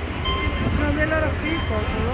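Busy city street noise: a steady low rumble under the voices of people passing close by.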